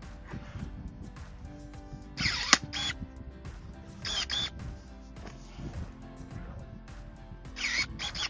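Background music, with three short whirring bursts from the motor of GeoTech MS-30 cordless electric pruning shears, about two seconds in, about four seconds in and near the end. The shears are working on a branch too thick for their jaws, which cannot take hold of it to cut.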